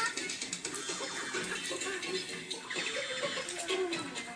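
Film soundtrack music playing from a television, with a quick, even beat.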